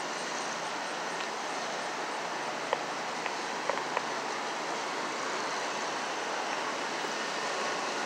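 Steady rushing of a large waterfall and white-water river, the Great Falls of the Passaic, heard from above, with a few faint clicks about three to four seconds in.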